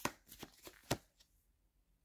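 Tarot deck being shuffled by hand: a handful of quick, papery card flicks over the first second or so.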